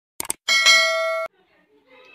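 Subscribe-button animation sound effect: a quick double mouse click, then a bright notification-bell ding that rings for nearly a second and cuts off suddenly.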